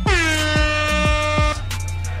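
Hip-hop beat with deep, pitch-dropping kick drums, topped by a single loud air-horn sound effect that dips in pitch as it starts, holds one note and cuts off sharply about a second and a half in.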